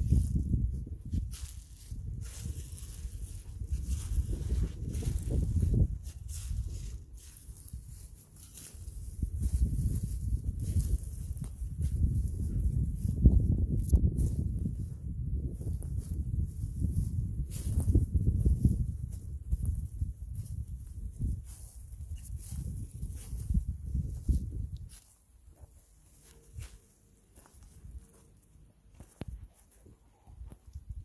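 Gusty low rumble of wind on the microphone, with footsteps and rustling in dry fallen leaves. The rumble dies away near the end, leaving only scattered steps and rustles.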